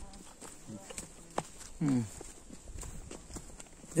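Footsteps on a dry dirt trail: faint, irregular scuffs and ticks, with one short falling voice sound about two seconds in.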